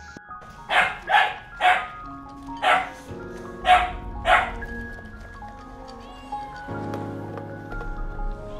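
A dog barking six times, three quick barks about a second in and three more spaced out after, over steady background music.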